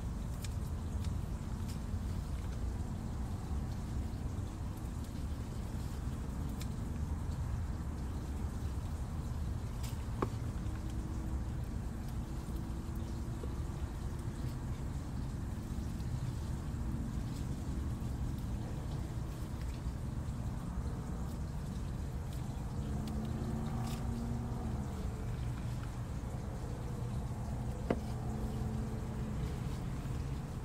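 A steady low rumble, with two brief sharp clicks, one about ten seconds in and one near the end.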